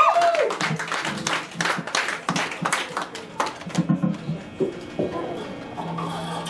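Small audience clapping and a few voices just after a live rock song ends; the clapping is dense at first and thins out about four seconds in.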